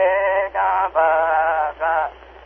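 A man singing an Omaha ceremonial song solo on an 1896 wax-cylinder field recording, thin-sounding with no high end. He holds a few steady notes with a slight waver, broken by short breaths about half a second, one second and near the end.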